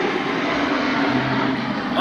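A steady engine drone with a low hum, holding level throughout.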